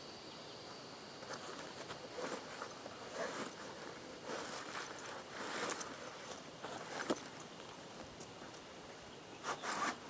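Rucksack handling noise: irregular rustling and scraping of pack fabric and foam as a cut-down foam sleeping pad is slid into the pack's back sleeve, with one sharp click about seven seconds in.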